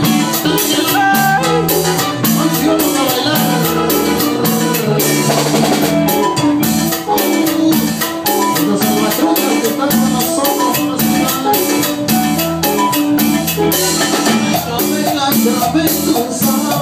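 Live cumbia band playing an instrumental passage, with a hand-played conga drum and a steady, even beat.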